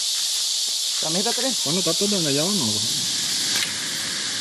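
Steady high-pitched hiss of an insect chorus, with people talking briefly from about a second in.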